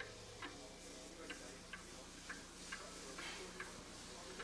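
Harp strings plucked very softly and sparsely: short, quiet, quickly damped notes that sound like clicks, irregularly spaced at about two a second.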